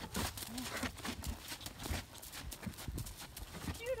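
A horse trotting on a gravel arena surface, its hoofbeats falling in a steady rhythm.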